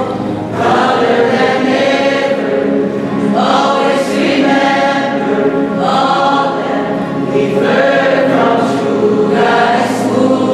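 A small choir of mixed voices singing together into a microphone, in long held phrases of two to three seconds each.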